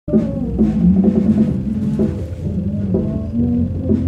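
Live band music from a drum kit played over sustained pitched notes from another instrument. The drum strikes fall about twice a second.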